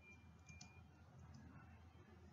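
Near silence: room tone with a faint low hum and a few faint clicks about half a second in.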